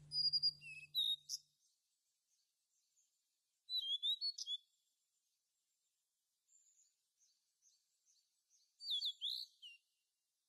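A songbird singing: three short bursts of quick, high chirps and whistles, about four seconds apart, with faint scattered chirps between them.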